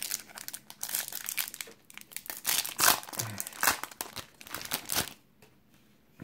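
Foil wrapper of a trading-card pack being torn open and crinkled by hand. It crackles in quick irregular bursts and stops about five seconds in.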